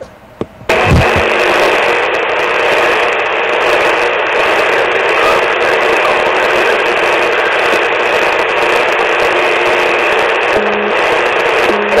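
Loud, steady rush of radio static from a two-way radio's speaker, starting abruptly about a second in after a click and a short thump. Near the end a steady low hum tone joins the hiss.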